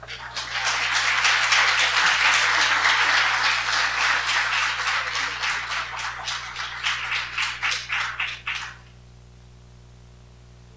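Audience applauding, thinning to a few scattered claps and stopping about a second before the end.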